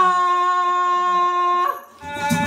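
A woman's voice singing one long, steady held note into a microphone, without words, which breaks off shortly before the end.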